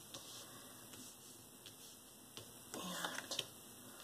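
Faint soft taps and slides of tarot cards being dealt onto a cloth-covered table, with a short, somewhat louder handling sound about three seconds in.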